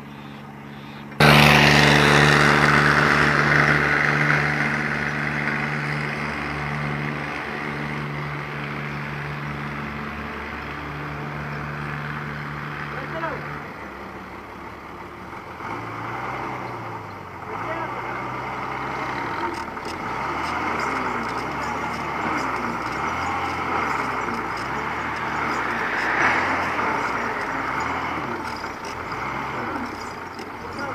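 Truck engine starts with a sudden loud burst about a second in and runs steadily. From about halfway on, it runs unevenly, its pitch rising and falling over and over.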